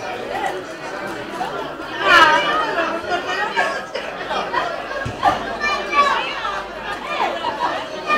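Indistinct chatter of several people talking at once, with one voice louder about two seconds in.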